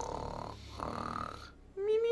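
A man snoring in his sleep. Near the end a long, pitched sound begins and slowly falls in pitch.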